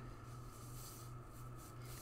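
Faint rustling of a synthetic wig's fibres as it is pulled on over a nylon wig cap, over a steady low hum.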